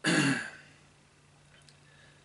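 A man clears his throat once, a short rough sound lasting about half a second.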